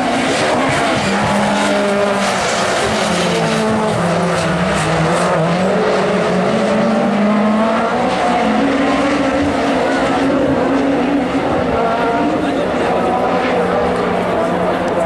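Super 1600 rallycross car at racing speed, its engine note continuous and loud, dropping and climbing again as it works through the gears.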